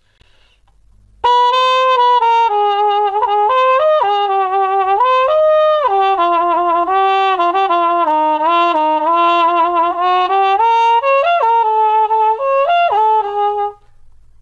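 Trumpet played through a Denis Wick adjustable cup mute, its cup slid further up toward the bell but not closed, giving a darker muted tone. A stepwise melody starts about a second in and stops just before the end.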